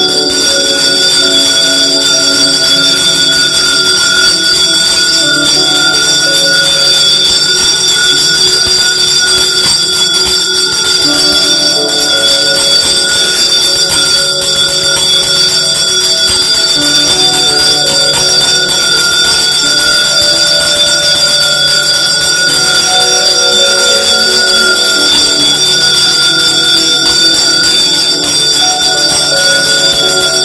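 Temple bells ringing continuously for the aarti, a dense, unbroken ringing with several high tones held throughout and lower tones shifting underneath.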